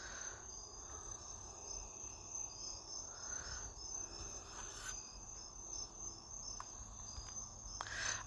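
Faint background noise with a steady high-pitched tone running throughout, and a few faint clicks, two of them near the end.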